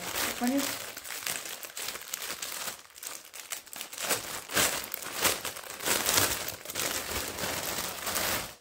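Thin clear plastic polybag crinkling and crackling irregularly as it is handled and pulled open.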